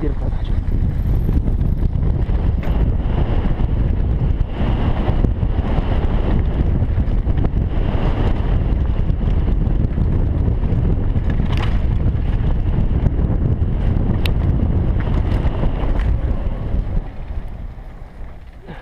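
Wind rushing over a helmet camera's microphone as a downhill mountain bike rolls fast down a dirt trail, with tyre noise and a few sharp clicks and rattles from the bike. The sound dies down near the end as the bike slows.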